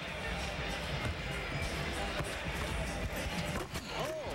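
Music playing over the sound system of a basketball arena, mixed with crowd noise, with a few sharp knocks near the end.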